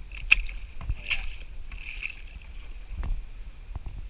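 Kayak paddle strokes: the paddle blade dipping and splashing in the water beside a plastic kayak, with a few sharp knocks spread through the strokes.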